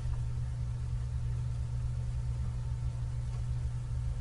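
A steady low hum with a faint hiss underneath: constant background noise of the recording, with no distinct event.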